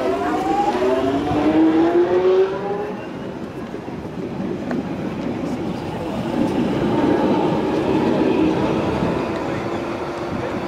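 London Underground 1996-stock train's GTO inverter propulsion pulling away: a stack of whining tones rises together in pitch over the first three seconds as the train accelerates, giving way to wheel and rail rumble. From about six seconds in, a steadier whine comes from a second train approaching.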